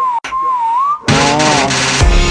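The song's whistled hook in a slowed-down remix: one whistle tone dips and rises again for about a second, with a brief break near the start, over a thinned-out backing. About a second in, the full slowed track comes back in.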